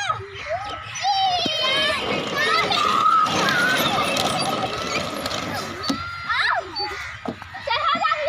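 Several children shouting, squealing and chattering excitedly while they play on slides, with a loud jumble of overlapping voices in the middle and a rising squeal near the end.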